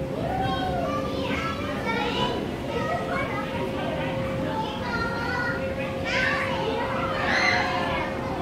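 Young children's voices: high-pitched chatter and calls from children at play, coming and going throughout.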